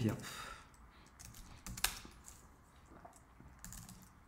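Typing on a computer keyboard: irregular, scattered key clicks, one sharper click just before two seconds in.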